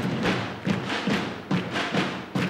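Drums beaten with sticks in a steady beat, about two strokes a second.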